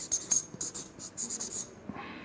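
Pen writing on a paper pad: a run of quick, irregular scratchy strokes that stop shortly before the end.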